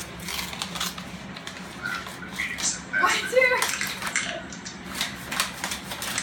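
A short stretch of a voice about halfway through, amid scattered rustling and clicking handling noises.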